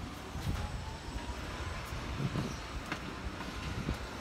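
Steady low background rumble and hiss, with a faint tone rising slowly in pitch over the first two seconds.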